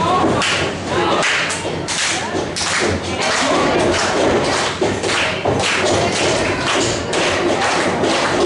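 Irregular thuds, about two a second, from wrestlers' bodies and feet striking the ring canvas and each other, with crowd voices underneath.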